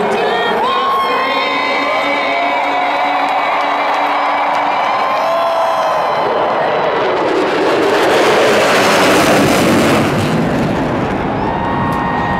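A large stadium crowd cheering and whooping as two Lockheed Martin F-22 Raptor fighter jets fly over. The jets' engine noise builds about halfway through, is loudest a couple of seconds later with the cheering, then eases near the end.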